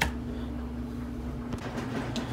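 A steady low hum, with a sharp click at the very start and a faint tick about one and a half seconds in.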